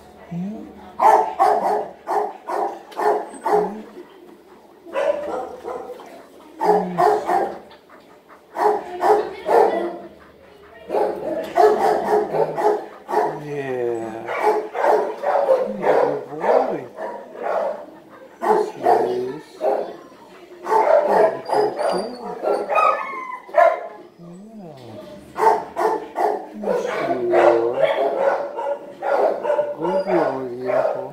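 A dog vocalizing in bursts with short pauses: short barks mixed with longer calls that bend up and down in pitch.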